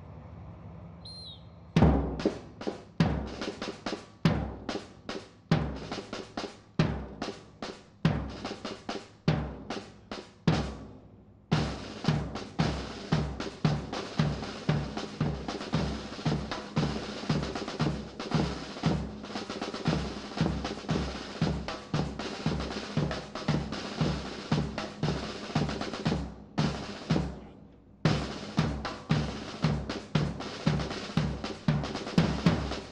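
Military marching drums, snare and bass drum, beating a march cadence: irregular accented strokes for the first several seconds, then a steady beat of about two strokes a second, with a brief break a few seconds before the end.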